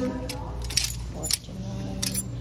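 Plastic clothes hangers clicking and clacking against one another and the metal rack rail as garments are pushed aside, a few sharp clacks over the low hum of the store.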